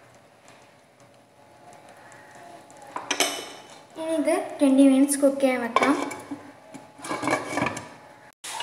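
A pan lid clatters and clinks as it is handled and set onto a nonstick pan, the clatter starting about three seconds in and recurring near the end. A voice speaks over it in the second half.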